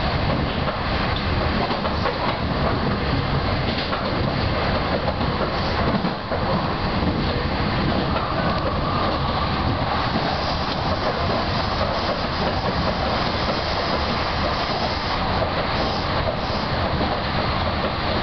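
Meitetsu Seto Line electric train running along the track, heard from inside the front car: steady wheel-on-rail running noise.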